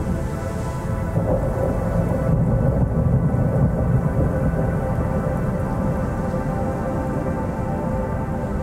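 Thunder rumbling low and long, swelling about a second in and easing after about four seconds, over rain and a steady sustained musical drone.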